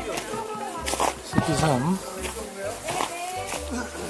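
Indistinct talk from people nearby, the words not made out, with a few sharp taps in between.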